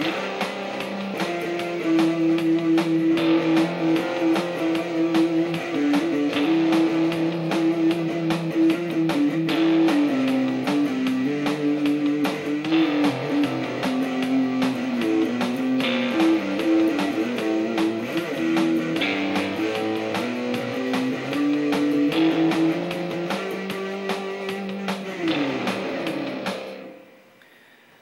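Electric guitar improvising a single-note melody up and down one string over a backing track with drums, in the key of C major. The music fades out shortly before the end.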